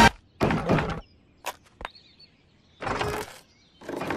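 Wooden barn doors being handled: two short bursts of noise with a couple of sharp clicks between them.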